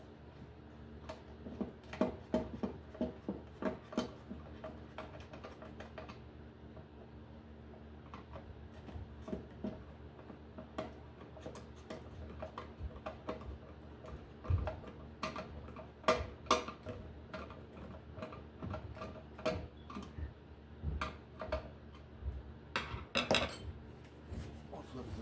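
Screwdriver and small metal parts clicking, tapping and scraping against a metal light fixture while a Romex cable connector is worked and tightened: irregular small metallic clicks, coming in clusters.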